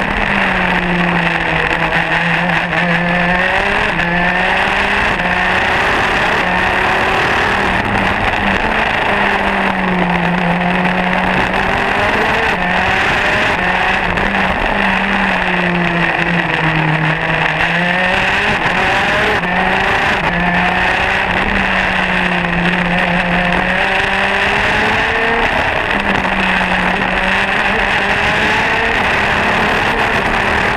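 Modena KZ 125 two-stroke single-cylinder kart engine at racing speed, its note rising and falling steadily over and over as the driver accelerates and lifts.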